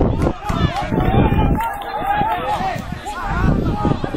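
People's voices at the touchline of an amateur football match, talking and calling out indistinctly.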